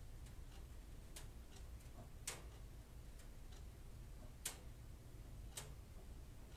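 Faint, irregularly spaced clicks over a low steady hum, two of the clicks louder than the rest.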